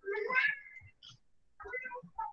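A short animal cry, one wavering call about a second long at the very start, followed near the end by a fainter sound.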